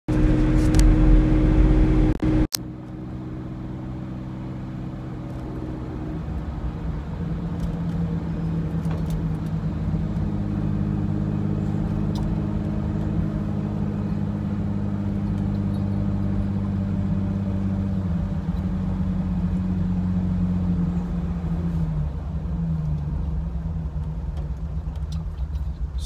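Car engine running steadily under road and wind noise, heard from inside the cabin with a side window open. There is a loud rumble at first and a brief break about two and a half seconds in. The engine note then shifts a few times with speed and drops near the end.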